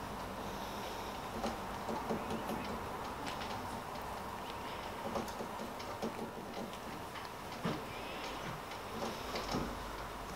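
Small handling noises of polymer clay being pressed into a flexible silicone mould by hand: soft squishing with scattered light clicks and taps as the mould flexes and is handled.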